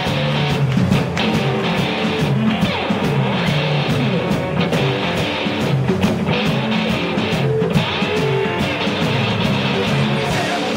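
Live electric blues-rock band playing an instrumental passage: electric guitars over a moving electric bass line and drums, loud and steady.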